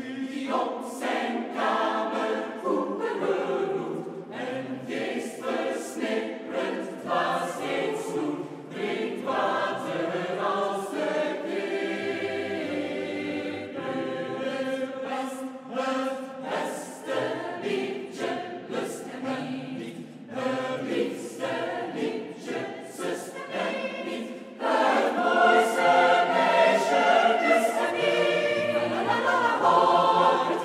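Mixed choir of male and female voices singing a Flemish folk song in Dutch, in a reverberant hall; the singing swells noticeably louder about five seconds before the end.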